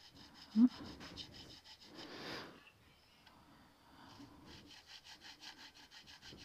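A small nut file rasping back and forth in a bass guitar's nut slot in quick, short strokes, several a second, in two runs, the second starting about four seconds in. The file is deepening the back end of the string slot to lower the string. A short low sound comes just after the start.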